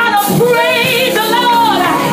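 Live gospel singing: a woman's voice holding long notes with vibrato and gliding between them, over band accompaniment.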